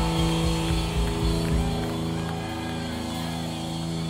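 Electric rock band holding a sustained closing chord, the electric guitar and bass ringing in a steady drone while the drum beat fades out about halfway through.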